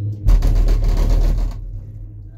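Gondola cabin rattling and rumbling for about a second as its grip runs over a lift tower's sheave rollers, over a steady low hum of the moving cabin.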